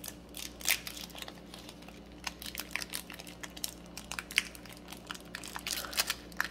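Foil Pokémon booster-pack wrapper crinkling and crackling in the hands, in scattered irregular crinkles, as the sealed top is picked and torn at by someone struggling to open it.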